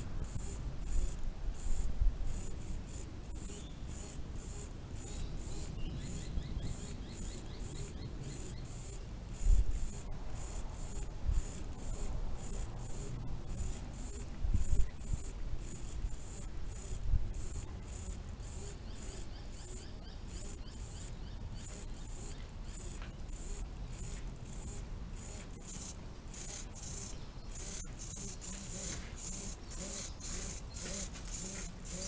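Insects chirping in a steady high pulse, about two a second, over occasional low rumbling thumps, the loudest about ten and fifteen seconds in.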